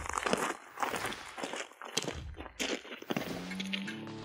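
Several people's footsteps crunching on loose gravel as they walk away at an irregular pace.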